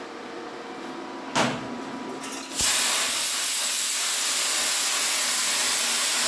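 Plasma cutter cutting through a steel sheet: after a short hiss a little over a second in, the arc strikes about two and a half seconds in and runs as a loud, steady hiss.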